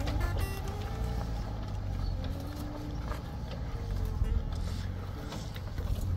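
Low, steady engine rumble of an off-road vehicle running at crawling speed as it crosses a dip in a dirt trail.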